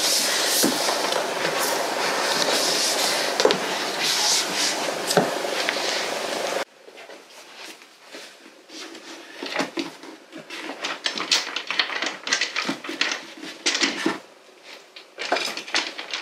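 Loud, close rustling and handling noise that cuts off suddenly about six and a half seconds in. It is followed by quieter, irregular knocks and scrapes of books being pulled out and slid onto bookshelf shelves.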